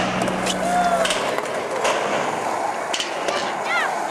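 Skateboard wheels rolling over concrete and ramps, with several sharp clacks of the board, and short calls from voices nearby.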